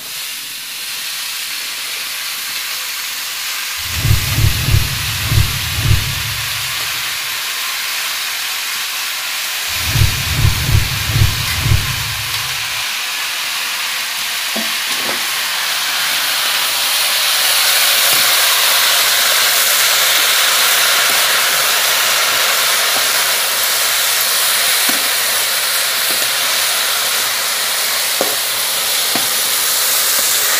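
Chopped wild mushrooms sizzling in hot oil in a pan: a loud, steady hiss that starts as the mushrooms go into the pan and grows a little louder as they fry. Twice, for a few seconds each, low pulsing thumps come through under the sizzle.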